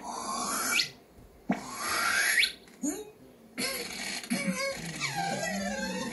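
Cartoon sound effects of a balloon being blown up: two rising whistles, one after the other. After that comes a longer hissing stretch with a wavering squeal, like air rushing out as the balloon gets away. It is heard through a TV speaker.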